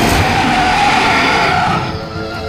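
Dinosaur roar sound effect: one long, shrill screech that starts suddenly and fades out near the end.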